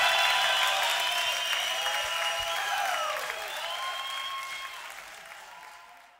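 Festival crowd applauding at the end of a rock band's set, with a few higher sounds gliding through it. The applause fades out steadily to almost nothing by the end.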